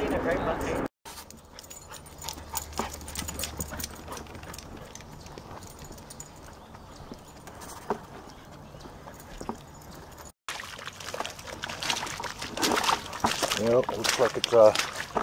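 Scattered taps of footsteps on a wooden boardwalk, with a low wind rumble on the microphone for a few seconds. Brief voices are heard at the start, and louder voices or movement come in near the end.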